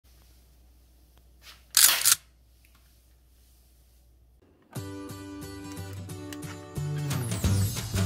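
A toy blaster gun fires once about two seconds in: one loud, short burst of noise with two quick peaks. Music starts about halfway through and gets louder near the end.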